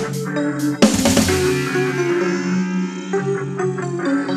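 Instrumental electronic music. A loud hit comes about a second in, then held notes ring out, and short rhythmic notes return near the end.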